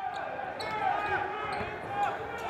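Basketball game in a gym: a ball bouncing on the hardwood court and short sneaker squeaks over a steady murmur of crowd voices.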